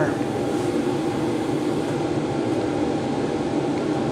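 Steady electric machine hum, fan-like, with a few low steady tones in it and no change in level.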